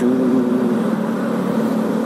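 Motorcycle engine running steadily while riding along, with a constant low hum and road and wind noise.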